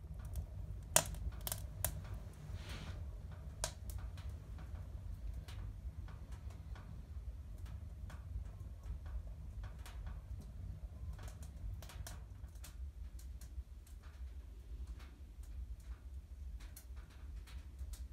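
Wood fire crackling in a wood stove: irregular sharp pops and clicks throughout, the loudest about a second in, over a low steady rumble.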